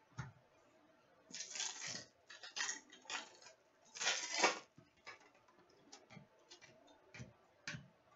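Trading cards being handled and shuffled over a glass counter: light clicks and taps of cards on the glass, with a few longer rustling swishes of card stock, the loudest about four seconds in.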